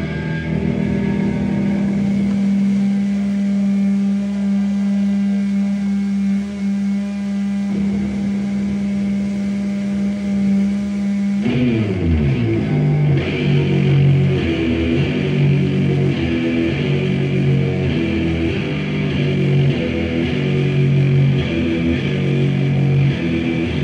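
Electric guitar played live through an amplifier, holding one low note for about eleven seconds, then sliding down in pitch and breaking into a rhythmic heavy riff.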